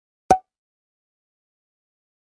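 A single short, sharp pop about a third of a second in.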